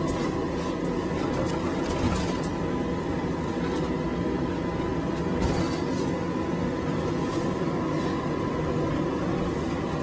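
Road and engine rumble inside the rear compartment of a moving ambulance: a steady low noise, with a thin steady high-pitched whine running over it.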